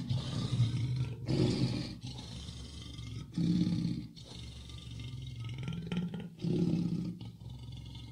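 Deep growling roars of a big cat, in four bursts about two seconds apart over a steady low hum, played as a sound effect.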